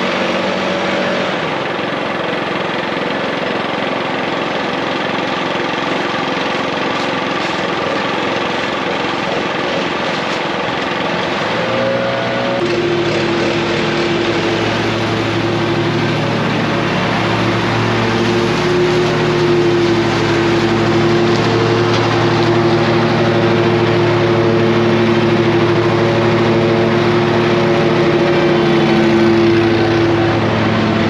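Small engines running steadily. About twelve seconds in, the sound changes to a backpack leaf blower running steadily, which grows louder as it comes close near the end.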